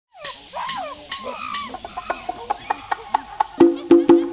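Cartoon monkey-like chattering calls with a few clicks, then a steady count-in of drumsticks clicked about four times a second, leading into loud hand-drum hits near the end as a Latin-style dance tune starts.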